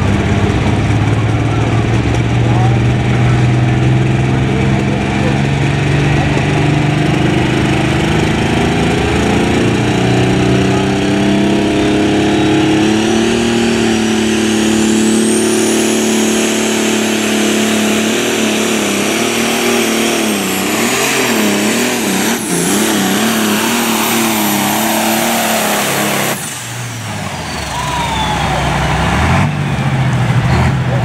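Modified John Deere pulling tractor's engine running at full throttle while it drags a weight-transfer sled. The engine note climbs in pitch and a high whine rises over it and holds. Near the end the engine drops off suddenly as the throttle is cut at the end of a full pull, the whine falling away before the engine picks up again.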